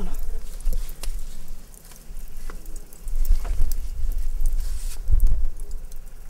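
Low rumbling thumps and bumps close to the microphone, with scattered light knocks and taps, two heavier bumps in the second half.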